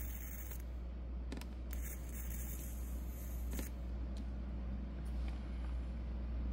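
Steady low hum of room noise with a few faint clicks, as a flexible-neck electric arc lighter is held to a candle wick and lights it.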